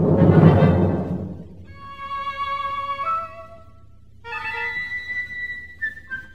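Symphony orchestra playing sparse modern concert music in a 1956 broadcast recording. A loud stroke at the start dies away within about a second, then thin held notes follow, with a near-pause about four seconds in.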